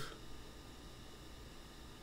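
Faint steady hiss with a low hum: the background noise of a voice recording in a gap between lines.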